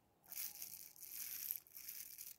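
Bubble wrap crinkling faintly in irregular patches under a hand and a model locomotive bogie resting on it, starting about a quarter second in.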